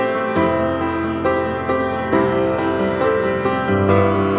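Solo piano playing a slow passage of repeated chords, the low bass note changing about half a second in and again near the end.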